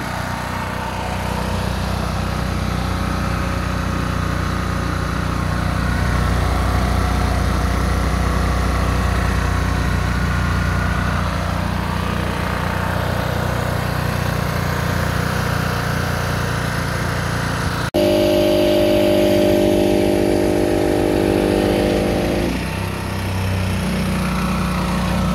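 The small petrol engine of a King Craft portable generator running steadily, just brought back to life after its fuel system was worked on. About 18 seconds in there is an abrupt break, and the hum turns louder and higher for a few seconds before settling back.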